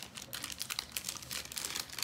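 Baseball trading cards being handled: cards slid off a stack and laid onto a pile, a quiet run of light clicks and rustles of card stock.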